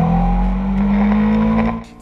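Heavy motorcycle engine revving up, its pitch rising steadily, then cutting off sharply near the end.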